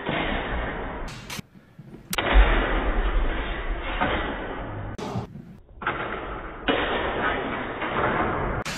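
Loud, rough hall noise from longsword sparring in a gymnasium, with a few sharp clacks like blades striking. The sound cuts out abruptly twice.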